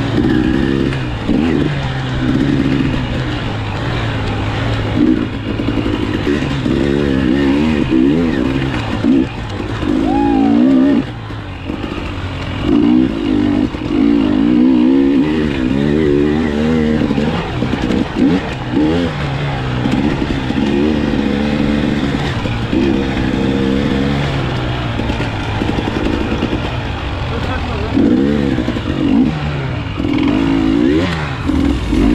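KTM dirt bike engine revving up and dropping back again and again as the rider works the throttle on a tight, rutted trail, picked up close by a helmet-mounted camera.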